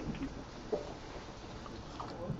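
A pause in a man's talk: steady room hiss with a faint murmur of his voice at the start and a small mouth click about three-quarters of a second in.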